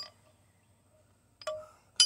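Steel carrier bearing puller clinking against metal as it is being set up under the truck: one sharp clink with a short metallic ring about one and a half seconds in, and another right at the end.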